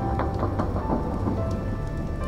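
Music from an animated episode's soundtrack, with a few held tones over a low, steady rumble and faint crackling.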